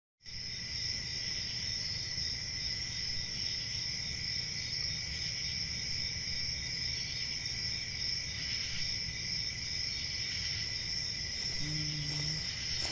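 Steady high chirring of crickets, a night-time insect ambience, with a low rumble underneath.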